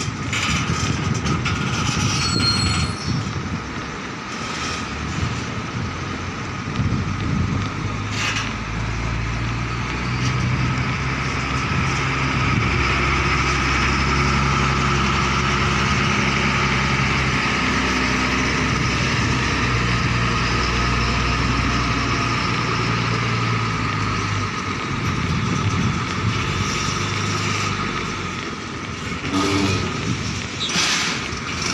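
Diesel container truck's engine running as the tractor unit pulls its loaded trailer past close by. It is a steady low engine drone, loudest through the middle and easing off near the end.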